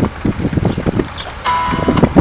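Wind buffeting the microphone. About a second and a half in, music starts over the loudspeakers with a held chord.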